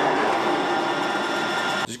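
Metal lathe running with its three-jaw chuck spinning: a steady mechanical whir carrying several whining tones, which cuts off suddenly near the end.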